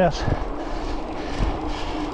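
Steady road noise of mountain bike tyres rolling over cobblestone paving, with wind buffeting the microphone.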